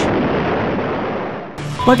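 Explosion sound effect: a single blast at the start that dies away over about a second and a half.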